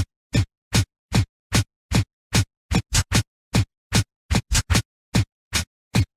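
A techno beat stripped down to separate short kick-drum hits, each a thud that drops in pitch. They come in steady time, about two and a half a second, with dead silence between, and a few come in quick doubles.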